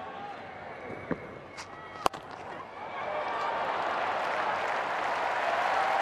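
Cricket stadium crowd noise, low at first with a few sharp clicks, then swelling into a louder steady hubbub from about halfway.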